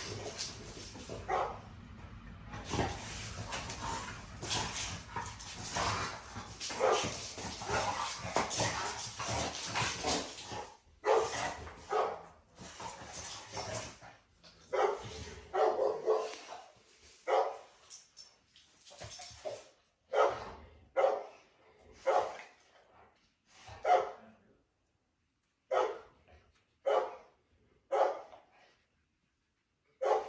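Two American bully pit bulls in a scuffle, one dog correcting the other: a continuous stretch of snarling and thrashing for about the first ten seconds, then short separate barks and whimpers about once a second as it dies down.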